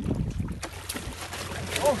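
Water splashing and churning against shoreline rocks as a large hooked kingfish thrashes in the shallows while being landed, with wind buffeting the microphone.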